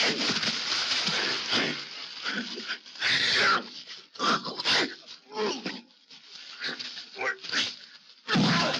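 Men grunting and straining as they wrestle on a straw floor, in short irregular bursts, with scuffling and rustling straw between them.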